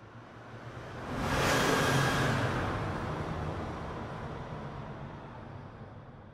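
A whoosh of rushing noise that swells up about a second in and then fades away slowly, a transition sound effect for an animated end card.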